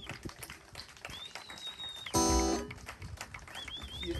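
Cole Clark acoustic guitar sounding one strummed chord about two seconds in, in an otherwise quiet stretch with faint high-pitched chirps.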